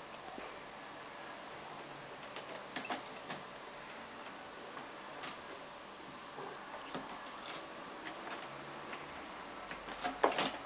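Scattered, irregular faint clicks and scratches of cats' claws catching on a sisal-rope scratching post and the carpeted cat tree, over a low steady hiss.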